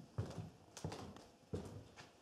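Footsteps on a hard floor, a few irregular steps at walking pace.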